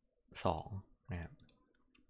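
A few faint, sharp computer mouse clicks in the second half, made while choosing an item from a drop-down list and closing a dialog box.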